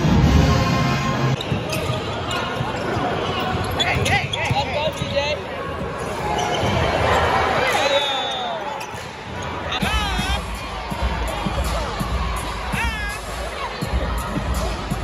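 A live basketball game in an arena: a basketball bouncing on the hardwood court, with a few short high squeaks typical of sneakers on the floor, over crowd chatter and music in the hall. Music fills the first second or so before the game sound takes over.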